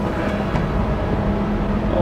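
Wind buffeting the microphone outdoors in the rain, a steady low rumbling hiss.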